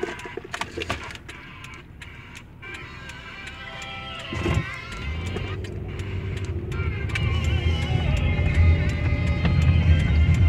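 Music playing from a Sony car stereo through the car's speakers, getting steadily louder, with heavy bass coming in about halfway, as the volume is turned up. A few clicks near the start.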